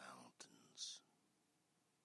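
A man's soft, whispered speech in the first moment, followed by a short mouth click and a brief breathy hiss.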